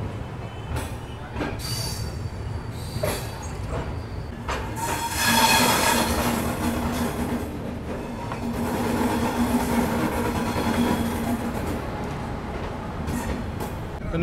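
A passenger train's coach rolling slowly out of a station, heard from the open door. Its running noise is broken by a few sharp clicks in the first seconds. From about five seconds in it grows louder, and a steady squealing tone sits over it until a couple of seconds before the end.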